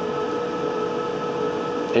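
Steady whirring noise of a Christie Solaria One digital cinema projector's cooling fans, with two constant hum tones over the rush of air.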